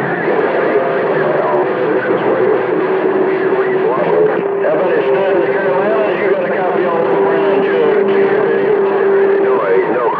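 CB radio speaker playing garbled, overlapping voices on a busy channel with a strong signal. A steady whistle tone runs under them and cuts off near the end.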